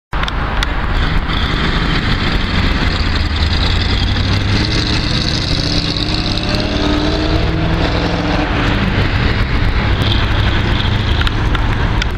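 Road traffic passing close by: car and bus engines and tyre noise running steadily, with one engine's pitch gliding up and down about halfway through.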